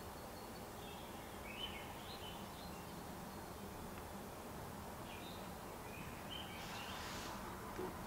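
Faint bird chirps in the background, a few short calls in two clusters, over a low steady hiss of room tone.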